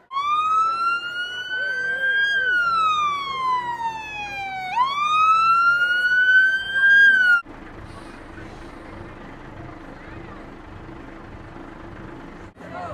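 An emergency-vehicle siren wailing: a slow rise, a long fall and a second rise, cutting off suddenly about seven seconds in. After it, a steady low engine hum under street noise.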